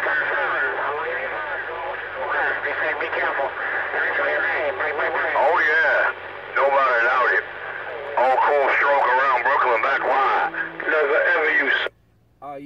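CB radio receiver's speaker carrying a strong incoming transmission: a man's voice, thin and distorted, with a low hum under it, cutting off abruptly near the end when the other station unkeys.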